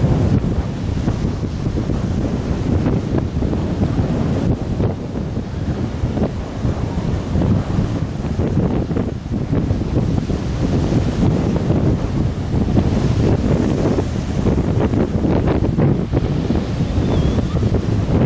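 Strong wind buffeting the microphone: a loud, unbroken rumble that rises and falls with the gusts, over choppy sea water.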